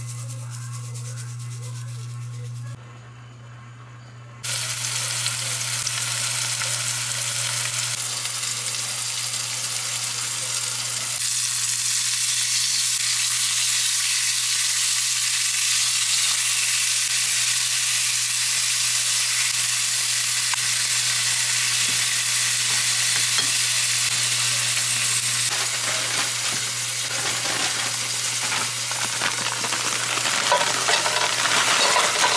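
Chicken strips frying in a pan: a loud, steady sizzle that starts suddenly about four seconds in and carries on, over a steady low hum.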